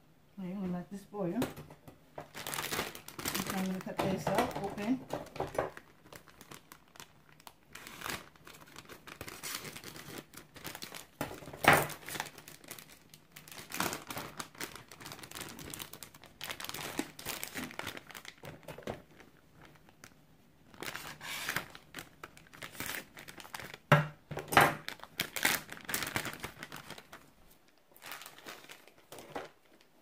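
Plastic packaging crinkling and tearing as it is handled and opened, in irregular bursts with a few sharper cracks.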